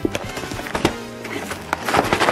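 A cardboard toy box being forced open by hand, giving about three sharp snaps of the card, over background music.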